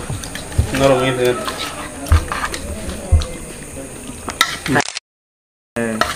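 Men's voices talking over a meal, with scattered clicks and knocks from hands working in a metal plate of rice. The sound cuts out completely for about a second near the end.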